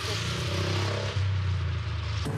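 Street traffic: a steady low engine hum from nearby vehicles over a wash of road noise.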